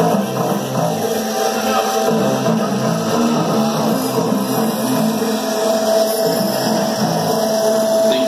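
Live rock band playing through a club PA, electric guitar and keyboards over a repeating bass pattern, with a long held note coming in about two-thirds of the way through.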